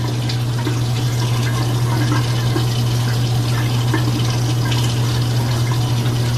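Bathroom sink tap running steadily into the basin, over a steady low hum.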